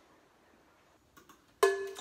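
Near silence, then two faint clicks and, about a second and a half in, one sharp struck musical note that rings and fades: the first note of a play-along backing track starting up.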